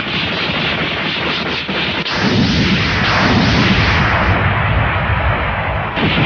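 Animated battle sound effects: a dense, continuous rumble of blasts and impacts, growing heavier and deeper about two seconds in.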